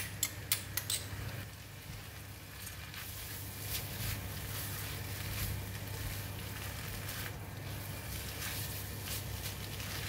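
Egg noodles stir-frying in a non-stick wok, sizzling softly as they are stirred and tossed with a silicone spatula, with a few light clicks near the start and a steady low hum underneath.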